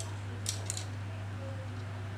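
Two short light clicks as a carbon fishing rod is handled, over a steady low hum.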